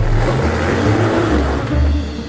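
A 1988 Jeep Comanche's straight-six engine revving up and down under load while the tires spin and scrabble on loose rock and dirt: the truck has lost traction and is stuck on the climb.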